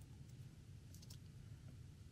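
Near silence: room tone with a few faint clicks of keys being pressed on a computer keyboard.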